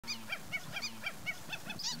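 A bird calling in a rapid series of short, nasal notes, each rising and falling in pitch, about four a second, quickening slightly near the end.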